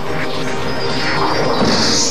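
Cartoon soundtrack of music mixed with crashing, clanking mechanical sound effects as pieces of powered armour lock into place, with a sharper burst near the end.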